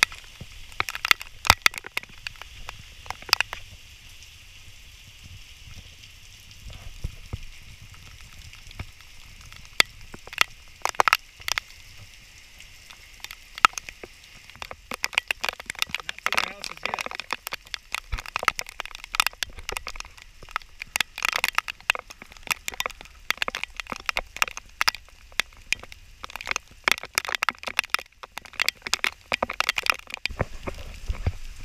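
Heavy rain falling steadily, with many sharp, irregular taps of drops striking close to the microphone.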